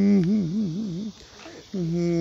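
A voice humming long held notes: one note wavers widely up and down for about a second, breaks off briefly, then a slightly lower note is held steady near the end.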